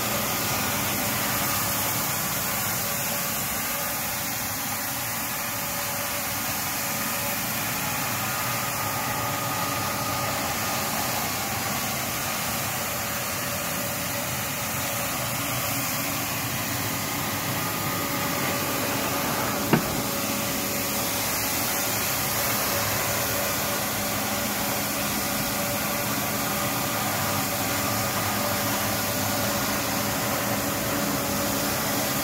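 Walk-behind floor scrubber running, its vacuum motor giving a steady hum and whine as the squeegee picks up water from a concrete floor. A single sharp click about two-thirds of the way through.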